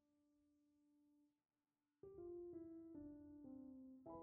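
Background piano music. A held note fades almost to silence, then about halfway through a run of notes begins, each a step lower in pitch.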